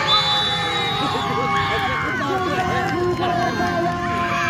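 Crowd of spectators at a football match, many voices talking and shouting over one another, with a high steady whistle-like tone for about a second at the start.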